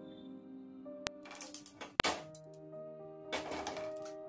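Soft background music with held notes. Over it, mustard seeds crackle in hot oil: a couple of sharp pops about one and two seconds in, and short bursts of crackling between them and again after three seconds.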